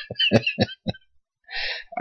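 A man laughing: a run of short, quick laughs that trail off about a second in, followed near the end by a short breath.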